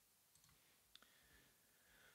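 Near silence with one faint computer mouse click about a second in.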